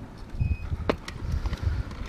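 Uneven low rumble on the bike-mounted action camera's microphone as the mountain bike rolls forward over gravel, with a sharp click about a second in.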